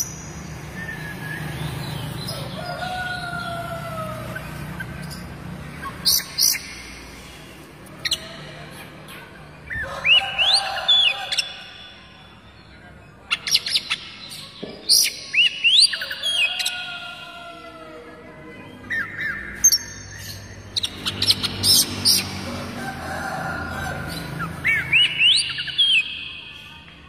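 Oriental magpie-robin (white-bellied kacer) singing: loud phrases of sharp, rising whistled notes and clicks, separated by pauses of a second or two.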